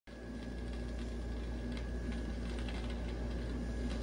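Vinyl LP surface noise as the turntable stylus runs in the lead-in groove: faint crackle with a few scattered small clicks over a steady low hum.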